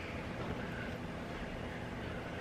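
Steady low background rumble, with no distinct sounds standing out.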